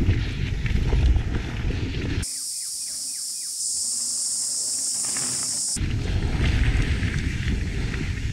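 Mountain bike rolling fast down a dirt trail, heard from a helmet camera: wind buffeting the microphone and the tyres rumbling over the ground. For a few seconds in the middle this gives way to a quieter trailside shot with a steady high-pitched hiss and a few short falling whistle notes.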